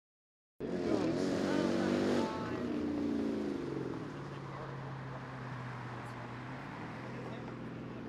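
Dodge Challenger R/T's V8 engine driving past, starting about half a second in. It is loudest for the first two seconds, then eases off to a steady drone.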